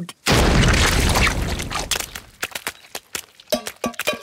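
Cartoon sound effect of a giant pumpkin exploding: a sudden loud boom about a third of a second in that dies away over a couple of seconds, then a scatter of short splats as the pieces land.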